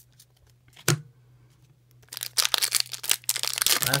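Foil Pokémon booster pack wrapper crinkling in the hands, a dense crackle starting about halfway through, after a single light knock about a second in.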